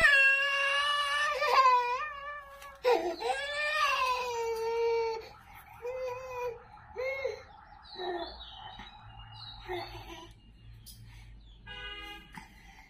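A toddler crying: two long, loud wails over the first five seconds, then shorter, quieter sobs and whimpers. A brief laugh comes near the end.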